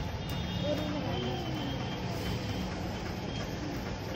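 Steady street traffic noise, a low rumble with a hiss, with faint voices in the background.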